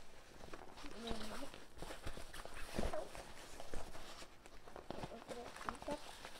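A fabric backpack being handled and opened: soft rustling and a few dull bumps at irregular moments, with quiet murmured speech.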